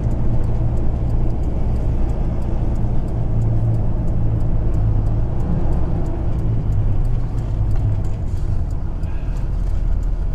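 Ford F-650 tow truck heard from inside the cab while driving on the interstate: a steady low engine drone with tyre and road noise. It eases off somewhat in the last few seconds as the truck slows.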